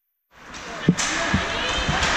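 Ice hockey play in an indoor rink cutting in from dead silence: a steady hiss of skates on the ice with dull knocks of sticks, puck and boards, and one sharp crack just under a second in.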